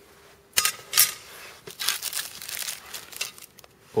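Clear plastic film crinkling as a hand handles a sheet-metal power-supply bracket wrapped in it. Two sudden loud handling noises come about half a second and a second in, then a stretch of rustling.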